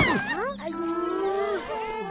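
A cartoon child's voice makes a short sliding vocal sound, then holds one note for about a second, over soft background music.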